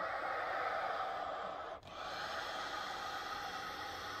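Air rushing through the bellows of a Sonola SS5 piano accordion with no notes sounding, as when the air-release valve is held open, in two long whooshes with a brief break just under two seconds in.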